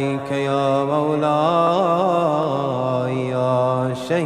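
A man's voice chanting one long drawn-out melodic line, the pitch wavering and bending upward in the middle, with a short break near the end: a melodic Arabic devotional chant.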